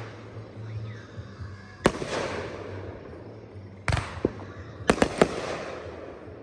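Aerial fireworks going off: a sharp bang about two seconds in, a deeper one about four seconds in, and a quick run of three bangs near the end, each trailing off in a fading echo.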